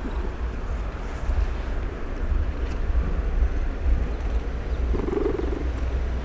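A very large long-haired cat making a low, trembling sound of contentment, with a short wavering call about five seconds in.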